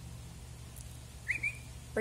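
A short two-note whistle, a person whistling to the dog, about a second in, over a steady low hum.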